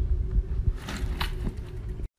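A bicycle ridden over a grass lawn and tipping over, heard as a steady low rumble with a few faint knocks and rattles about a second in.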